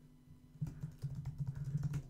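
Computer keyboard typing: a quick, irregular run of key clicks starting about half a second in.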